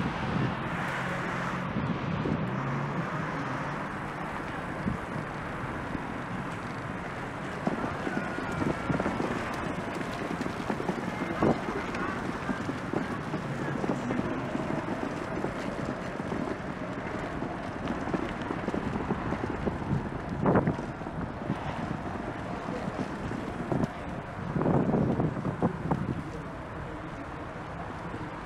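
City street noise heard from a moving bicycle: a steady rush of wind on the action camera's microphone over passing traffic, with a few brief sharp sounds and a louder stretch of about a second near the end.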